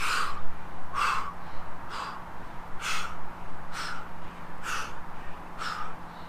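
A man's short, forceful exhalations, seven of them about a second apart, one with each rep of a fast crisscross leg crunch.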